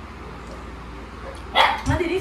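A steady low hum, then about a second and a half in a short, loud cry.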